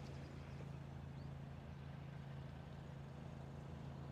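Faint steady low-pitched hum with a light even background hiss; no club strike or other distinct event.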